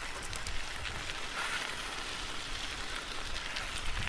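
A steady hiss of fine, close-set crackles, a rain-like noise bed.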